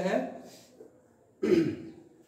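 A man clears his throat with one short cough, about one and a half seconds in, in a small room.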